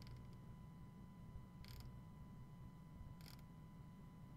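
Near silence: faint room tone with a steady low hum, broken by two brief, faint clicking sounds about a second and a half apart.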